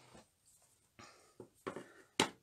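Faint handling noises on a tabletop: a few soft knocks and scrapes of plastic craft supplies, mostly in the second half, as a stamp ink pad is brought over and set down.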